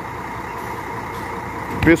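Parked intercity coach idling, a steady mechanical hum. A voice starts near the end.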